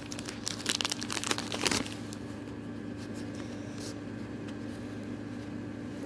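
Foil Pokémon booster pack wrapper crinkling and tearing as it is opened, a dense run of crackles lasting about two seconds. After that only a faint steady hum.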